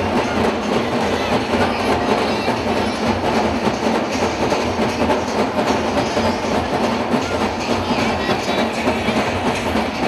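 Loud, continuous din of a dense street crowd with fast, unbroken drumming from a dhol drum band.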